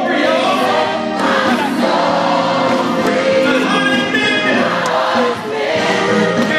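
Live gospel singing: a male lead singer on a microphone, with many voices singing along and long held notes.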